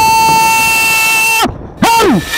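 A person's long, high-pitched scream held on one note, which breaks downward and cuts off about a second and a half in, followed near the end by a second short cry that falls in pitch.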